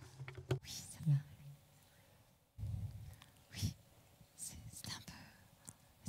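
Quiet, indistinct voices and whispering over room noise. The low background level jumps up suddenly about two and a half seconds in.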